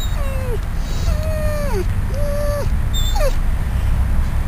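Yellow Labrador retriever whining in four drawn-out cries, each held and then sliding down in pitch, the last one short. This is the crying he does when uncomfortable or somewhere new after his surgery, which makes it hard to tell whether he is in pain. A steady low rumble runs underneath.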